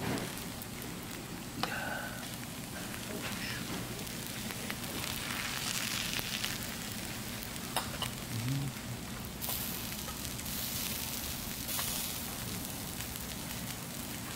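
Fried rice and pork belly sizzling on a large hot iron griddle: a steady crackling hiss with a few sharp pops, growing brighter and stronger in the second half.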